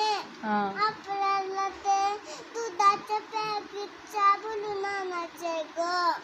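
A young child singing a high-pitched tune without accompaniment: a string of short held notes, some sliding up or down into the next.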